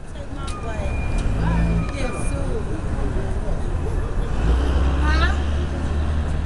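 Street ambience: a steady low traffic rumble that swells in the second half, with indistinct voices of people talking nearby.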